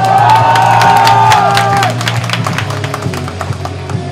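Loud rock music with a crowd cheering and clapping over it; the cheering and claps are strongest in the first two seconds.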